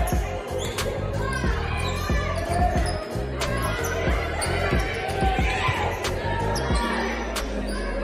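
Volleyball being struck several times in an echoing gymnasium, with voices and music going on behind.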